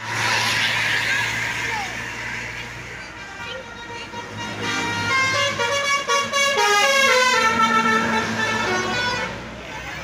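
A tour bus's basuri musical air horn playing a tune of several stepped notes for about four seconds, starting around five seconds in, over the low running of the bus engine.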